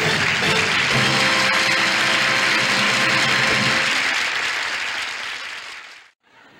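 Studio audience applauding over band music playing the sketch off; the music stops a little past halfway and the applause fades out just before the end.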